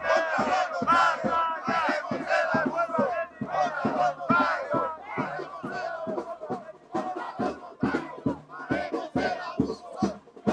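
Crowd of protesters shouting and chanting slogans together, many voices overlapping.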